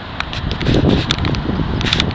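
Wind rumbling on the microphone, with a few short clicks.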